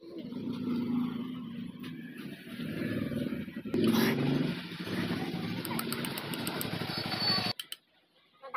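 A motor vehicle engine running steadily, loudest about four seconds in, then cutting off suddenly near the end.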